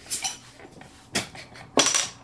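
A glass soda bottle's metal crown cap being pried off: a few short metallic clicks, the loudest near the end with a brief high ring as the cap comes free.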